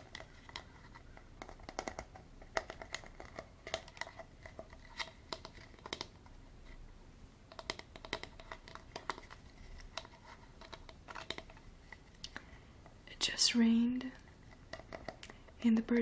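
Fingertips and nails tapping and scratching on a hard plastic Dasani water bottle, making quick, irregular light clicks and crinkles close to the microphone.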